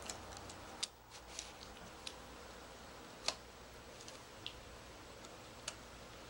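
A small dog gnawing a chew bone: faint, irregular sharp clicks of teeth on the bone, the loudest a little past three seconds in.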